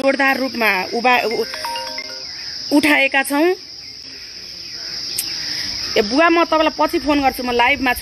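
Steady high-pitched chirring of crickets that runs on without a break behind a woman's talking.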